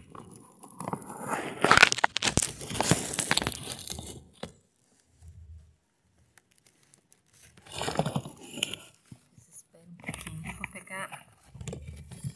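Bursts of rustling, crackling handling noise, loudest between about one and four seconds in, with shorter bursts near the middle and the end.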